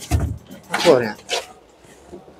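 A short clunk of a car boot floor board being handled, followed by a few brief spoken sounds.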